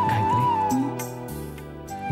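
Soft background music: a flute melody moving in small steps over sustained chords, which change about a second and a half in.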